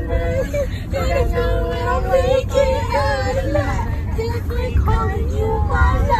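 Girls' voices singing along informally, with held, wavering notes and short breaks between phrases, over the steady low rumble of the car they are sitting in.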